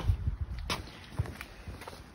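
Footsteps on concrete with a few dull low bumps, the loudest in the first half second.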